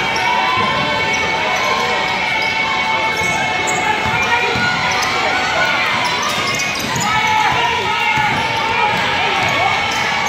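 Indoor basketball game: a ball bouncing on a hardwood gym floor, sneakers squeaking in short squeals, and spectators and players talking and calling out, all echoing in a large gym.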